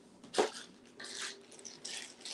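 A single sharp knock about half a second in, then a clear plastic zip-top bag of ribbon crinkling as it is picked up and handled.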